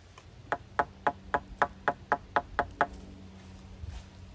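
A quick, even series of about ten sharp knocks, roughly four a second, stopping about three seconds in.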